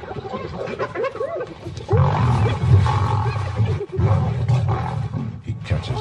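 Spotted hyenas feeding on a carcass: short calls that rise and fall, then loud, deep growling from about two seconds in.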